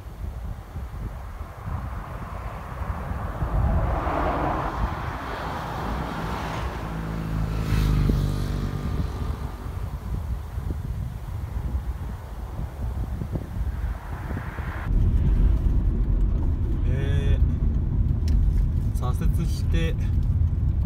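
Roadside outdoor traffic noise with a vehicle passing about eight seconds in. About fifteen seconds in it switches abruptly to the steady road and engine hum heard inside a moving car.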